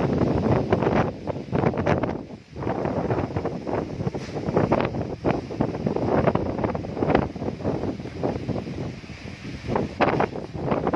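Strong dust-storm wind buffeting the phone's microphone in uneven gusts, with a sudden brief lull about two and a half seconds in.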